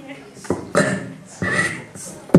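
A person's voice making a few short, throaty vocal noises, each starting suddenly.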